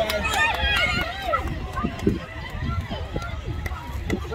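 Several voices calling and shouting out on a rugby league field, overlapping and loudest in the first second or so, with a few sharp clicks and a steady low rumble underneath.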